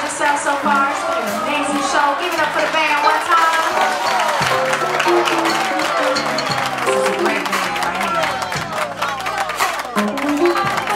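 A woman singing into a microphone with a live band playing behind her.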